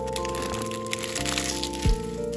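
Background music with held tones and a deep kick drum near the end, over the crackly crinkling of clear plastic packaging being handled.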